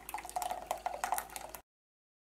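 Thick milky ice cream mix poured from a blender jar into a stainless steel pot, splattering and dripping in many small wet clicks. The sound cuts off suddenly about a second and a half in.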